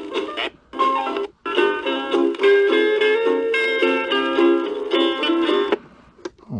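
A vintage 45 rpm single playing on an ION portable suitcase turntable, thin with almost no bass. The music breaks off twice in the first second and a half as the tonearm is handled, then plays on and stops just before the end.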